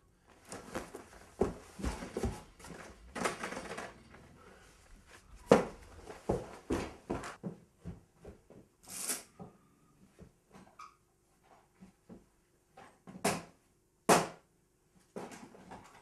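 Irregular knocks, rustling and thumps of someone moving about a small room and handling a heavy curtain and then a door. The sharpest knock comes about five seconds in.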